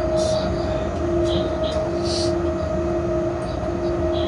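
Running noise in the cab of an electric freight locomotive under way: a steady rumble with two steady whining tones that break off about once a second, and a couple of short hisses.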